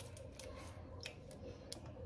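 Faint, scattered light clicks and taps while a silicone pastry brush dabs sugar syrup onto a sponge cake layer.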